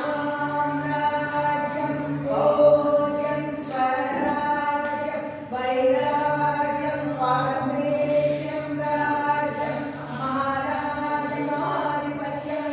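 A group of devotees singing a devotional aarathi song together, long held notes moving from pitch to pitch over a steady low drone.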